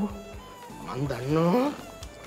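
A man's drawn-out whining sound, about a second long, rising in pitch, over soft background music.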